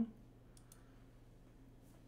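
Faint computer-mouse clicks over quiet room tone, as a menu item is clicked in a web console.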